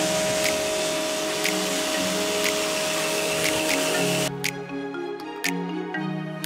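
Pressure washer spraying water onto a boat deck: a loud, steady hiss with a steady motor whine, starting suddenly and cutting off about four seconds in, over background music with a beat.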